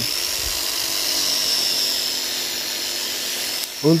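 RYU drill-style electric rotary polisher running at speed setting 3, its wool bonnet buffing a compound-and-wax mix on a painted motorcycle fuel tank: a steady high whine with a constant level.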